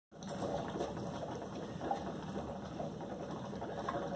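Methane from a lab gas jet bubbling through soapy water out of a rubber hose, a steady, dense, irregular bubbling as a mound of foam builds up.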